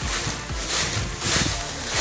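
Footsteps through dry fallen leaves, the leaves rustling and crackling with each step in a regular walking rhythm.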